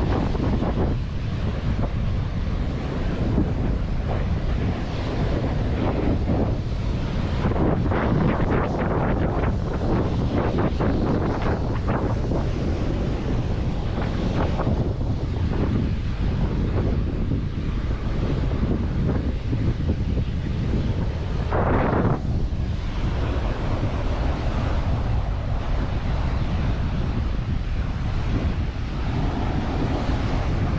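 Ocean surf washing up onto a sandy beach, a continuous wash of breaking waves, with wind buffeting the microphone and a rumble that rises and falls unevenly.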